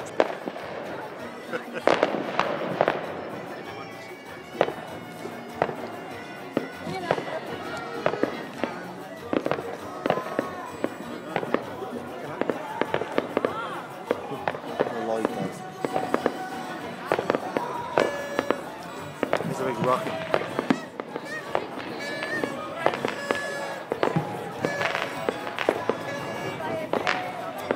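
Aerial fireworks going off in many irregular bangs, some sharp and much louder than the rest, over a continuous bed of music and voices.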